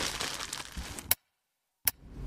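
Faint rustling and crackling that cuts off to dead silence about halfway through, then a single sharp click near the end.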